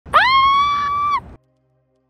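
A woman's high-pitched excited scream, swooping up at the start, held level for about a second, then dipping slightly and cutting off abruptly.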